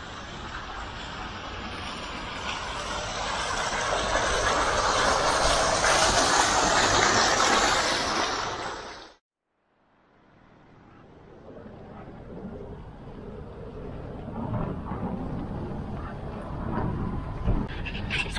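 Water from a row of fountain jets splashing into a basin, a steady hiss that grows louder and then cuts off after about nine seconds. After a second of silence, a fainter steady outdoor hiss follows.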